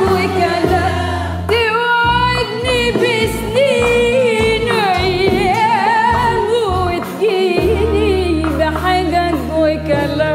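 A woman singing an Arabic song in maqam Hijaz, her voice wavering through quick melismatic ornaments, with an oud among the accompanying instruments. Low instrumental notes run beneath her: short repeated notes through the middle, then a long held low note from about three-quarters of the way in.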